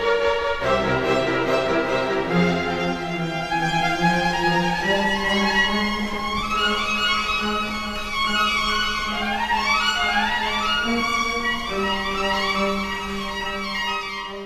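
Solo violin with a string orchestra playing a baroque piece. The violin plays repeated fast rising runs over held low notes from the cellos and basses.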